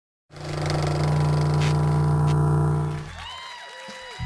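Live rock band on stage: a loud held chord with a deep bass note rings steadily for about three seconds, then dies away into faint tones that slide up and down in pitch.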